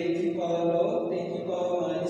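A man's voice drawing out long, held vowels at a steady pitch in a sing-song way, close to chanting.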